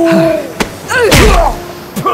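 Audio-drama fight sound effects: a strained vocal groan, a sharp hit about half a second in, then a heavy body thump with a pained grunt about a second in.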